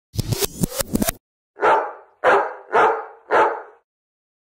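A dog barking four times at an even pace, each bark fading with a short echo, after a quick burst of sharper, rapid sounds in the first second.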